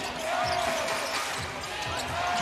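A basketball being dribbled on a hardwood court, against the steady noise of an arena.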